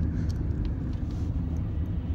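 Car running, heard from inside the cabin as a steady low rumble of engine and road noise.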